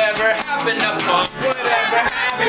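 Live acoustic folk-punk music: voices singing to a strummed guitar, with a steady jingling of bells.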